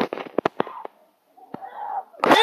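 A quick run of sharp knocks and clicks in the first second. Near the end a child's voice rises.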